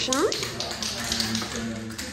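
Aerosol spray paint can being shaken, its mixing ball rattling in a quick run of clicks, with a voice briefly at the very start.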